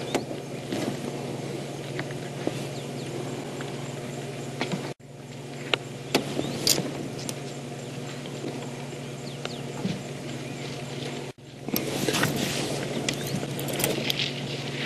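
Steady low hum of an idling vehicle engine, with scattered sharp clicks and snaps over it; the sound cuts out for an instant twice.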